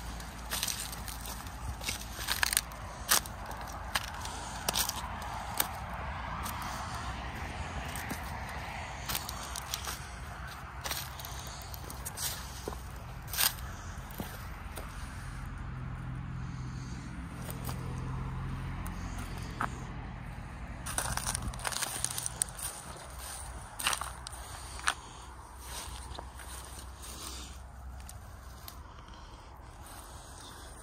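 Footsteps crunching through dry, cut plant stalks and stubble, with irregular crackles and snaps of breaking dry stems.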